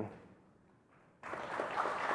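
A man's voice ends a word, then about a second of quiet room. Audience applause begins abruptly just over a second in and carries on steadily.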